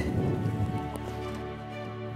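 Water splashing around a striped bass held at the surface beside the boat for release, strongest in the first second and then fading, under background music with steady held notes.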